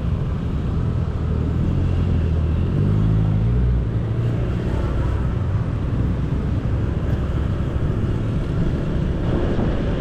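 Scooter engine running as the rider pulls away from slow traffic and speeds up, its low hum rising in pitch a few seconds in and then levelling off, with road and wind noise and other motorbikes and cars passing close by.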